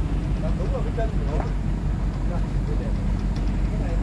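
Truck engine running steadily under load with a low, even hum while the truck's crane unloads the trees; faint voices talk in the background.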